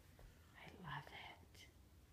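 Near silence with a short, faint whispered voice from about half a second in to a little past one second.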